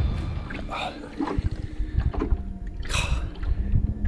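Wind rumbling and buffeting on the microphone in an open boat, with water lapping and a few brief quiet spoken fragments.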